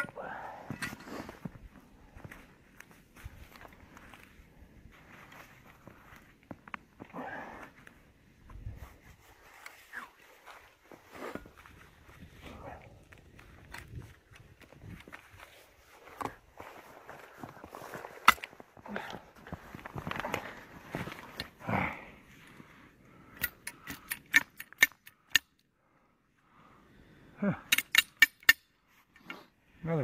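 Steel traps, chain and cable stake being handled while traps are pulled: scattered metallic clinks and knocks, with two quick runs of sharp clicks in the second half.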